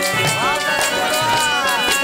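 Live folk music: a barrel drum beating steadily under sustained electronic-keyboard notes, while a sung line slides up and back down in pitch twice.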